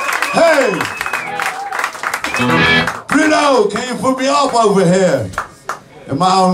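Live garage rock band: amplified electric guitars with sliding, falling notes and a man's voice through the PA.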